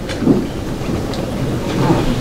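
Steady rumbling, hissing noise of an amplified hall in a pause between phrases of a man's speech.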